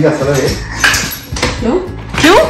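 Light clinking and clattering of small hard objects, a few short knocks, the loudest just under a second in.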